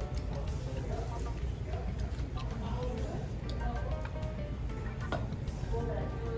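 Restaurant background of music and indistinct voices over a steady low hum, with a few sharp clicks of chopsticks and spoons against bowls as noodles are eaten.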